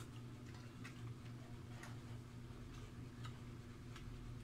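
Faint, irregular small clicks and smacks of someone eating by hand, chewing and fingers working rice on a plate, over a steady low hum.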